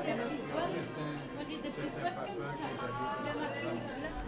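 Diners' chatter: many people talking over one another in overlapping conversation, with no single voice standing out.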